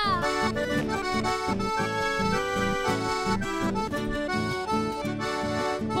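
Accordion playing a chamamé melody over a rhythmic acoustic guitar accompaniment, with no singing.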